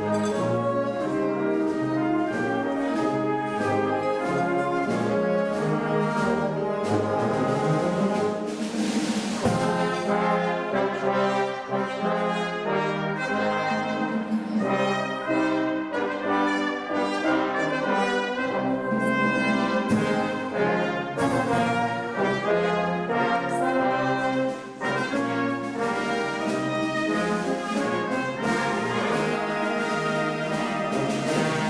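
Concert wind band of brass, saxophones and percussion playing a march, with a cymbal crash about nine seconds in.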